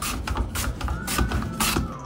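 A few light knocks and clicks from things being handled at a steel kitchen sink.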